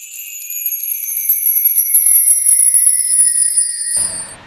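A shimmering, bell-like sparkle sound effect for a title transition. High chiming tones glide slowly downward under a fine glittery tinkle, with no low sound at all.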